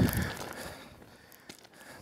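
Quiet outdoor background after a voice trails off, with a faint rustle and one light click about one and a half seconds in.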